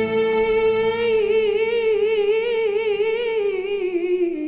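Female vocalist holding one long sung note, its vibrato widening after about a second and the pitch dipping slightly near the end.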